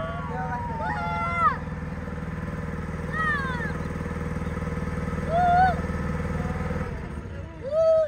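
A boat's motor running steadily, then cutting out about seven seconds in. Over it come a few short, high, rising-and-falling calls.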